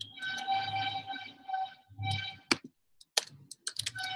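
Typing on a computer keyboard: a run of key clicks, with a thin steady high tone that comes and goes alongside them.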